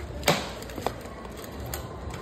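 A sharp click about a quarter second in, then a fainter click and a few light ticks, over low steady room noise.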